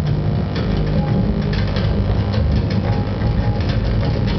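Live electronic noise music: a loud, dense low droning hum with a steady low tone, overlaid with rapid irregular crackles and clicks.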